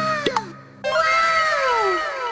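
Cat meows under a heavy echo effect: each call rises and then falls in pitch and repeats several times as it fades. A steady low tone sounds beneath the first call, and a new meow comes in about a second in and echoes away.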